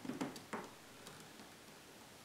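A few faint, short clicks and taps in quick succession in the first half second, from a plastic spring clamp being squeezed and set against a wooden frame.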